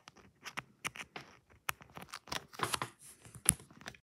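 Irregular light clicks, taps and scratches of handling noise as aluminium crochet hooks, yarn, a zipper and plastic are moved close to the microphone, with one sharper click about three and a half seconds in.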